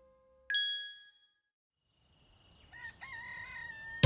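A single bright chime rings about half a second in and fades away; after a short silence a rooster crows near the end, one long wavering then held call, over a faint hiss.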